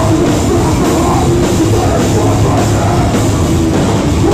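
A metalcore band playing live and loud: a driving drum kit under heavy electric guitars and bass, a dense wall of sound with no let-up.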